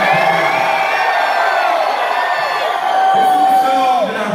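Concert crowd in a club cheering, whooping and yelling, many voices overlapping. Near the end one voice holds a long, steady high note.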